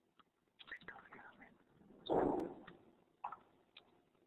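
Faint keyboard clicks as a word is typed, some quiet indistinct muttering, and a short breath into the microphone about two seconds in, all heard through narrow-band webinar voice audio.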